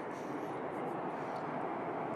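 Steady hum of distant city traffic, an even background roar with no single vehicle standing out.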